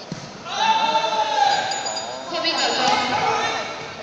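Loud, high-pitched shouts at a karate kumite bout: one held for almost two seconds, then a shorter second one, ringing in a large hall. A short thump comes right at the start.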